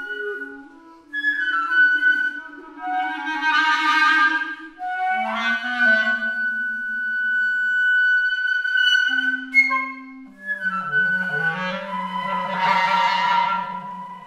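Flute and clarinet duo playing a slow contemporary piece: long held notes that shift in small steps, with the clarinet sustaining low notes beneath higher held tones. Twice, about four seconds in and near the end, the sound swells louder as a hiss of air rises over the notes.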